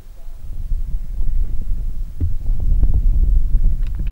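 Loud, uneven low rumble of wind buffeting the microphone, growing stronger in the second half.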